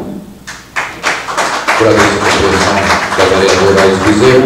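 A rapid patter of sharp taps starting about half a second in, followed from about two seconds in by a man's voice speaking.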